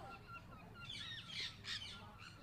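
Several parrots calling: a steady mix of short chirps and whistles, with louder, harsh squawks from about a second in.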